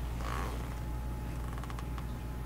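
Steady low electrical hum on the microphone, with a brief rustle or creak about a quarter second in and a quick run of small clicks near the end.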